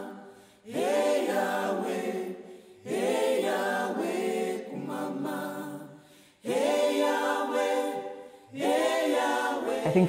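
Unaccompanied voices singing together in harmony: a series of long held phrases, each a second or two, with short breaks between them.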